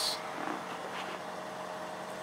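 Steady background hum inside a pickup truck's cab, with a few faint unchanging tones in it.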